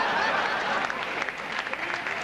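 Comedy-club audience laughing and applauding, the clapping becoming more distinct about halfway through.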